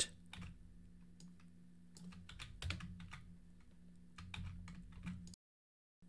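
Faint, scattered clicks of computer keyboard keys being pressed, a dozen or so at irregular intervals over a faint steady low hum, cutting to dead silence shortly before the end.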